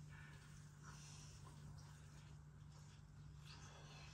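Near silence: faint closed-mouth chewing of a mouthful of breaded cheese nugget over a low steady hum.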